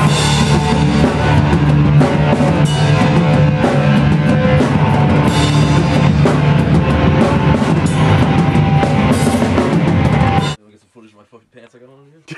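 Live hardcore punk band playing loud, with the drum kit and cymbals to the fore. The music cuts off abruptly about ten and a half seconds in, leaving only faint room sound.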